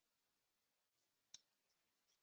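Near silence, with one faint short click a little past halfway.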